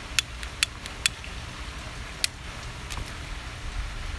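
A tobacco pipe being relit with a lighter and puffed: a handful of short, sharp clicks and pops at irregular intervals over a low steady rumble.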